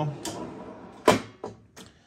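Hotronix Fusion IQ heat press being opened after a pre-press: two sharp clunks about a second apart from the press mechanism, then a couple of fainter knocks.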